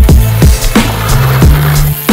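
Electronic dance music with a heavy kick drum hitting every half second or so over a deep, sustained bass line.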